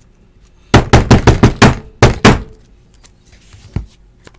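Hard plastic card holders clacking against each other as a stack of cased trading cards is gathered and squared up: a quick run of about nine sharp clacks, then two more.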